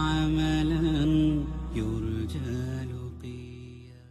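Background music: a sustained, wordless chant-like melody over a low steady drone, fading out over the last couple of seconds.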